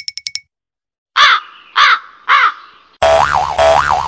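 Sound effects: a fast run of short bell-like pings that stops about half a second in, then three loud crow caws about half a second apart, then a warbling tone that swings up and down in pitch.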